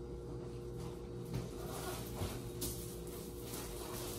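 Faint rustling and crinkling as a person lies back on a paper-covered medical exam table, with a few soft rustles over a steady low room hum.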